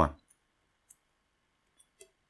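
A spoken word ends right at the start, then near silence broken by three or four faint, separate clicks of a stylus tapping on a tablet screen while writing.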